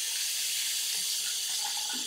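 Water running steadily from a bathroom tap into the sink, an even hiss.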